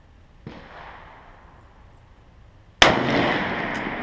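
A single loud shot from an M1 Garand .30-06 rifle near the end, with a long echoing tail, followed by brief high metallic clinks. A fainter gunshot from elsewhere on the range sounds about half a second in.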